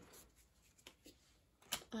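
A stack of baseball cards being handled: faint sliding and a few soft clicks as the top card is moved to the back of the stack, with a sharper snap near the end.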